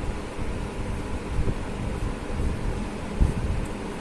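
Steady low rumbling background noise with a faint hiss, a little louder for a moment about one and a half seconds in and again near the end.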